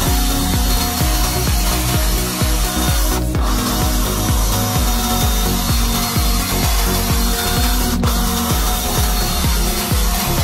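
Electric drill boring into the metal side of a cheap padlock body: a steady grinding whir as the twist bit cuts a row of holes through the lock. Background electronic music with a steady beat plays underneath.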